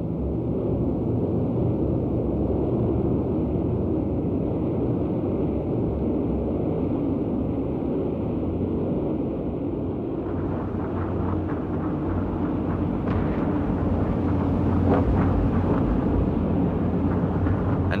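Piston aircraft engines droning steadily. About ten seconds in the drone turns fuller and rougher, and it swells toward the end.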